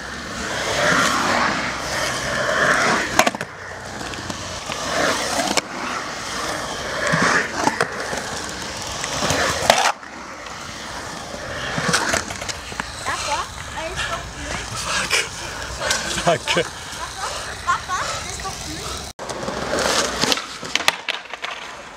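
Skateboard wheels rolling on concrete with a continuous rumble, broken every second or two by sharp clacks of the board and trucks knocking against the surface.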